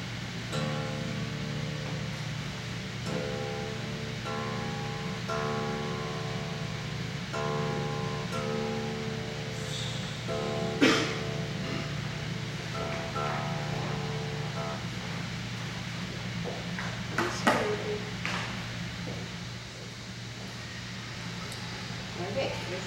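Acoustic guitar being tuned: the strings plucked and strummed again and again, each chord left to ring, with short pauses between, over a steady low hum. A sharp knock about 11 seconds in, and a few short sharp sounds near the end.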